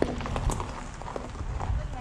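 Footsteps on a paved path, irregular sharp steps over a low wind rumble on the microphone.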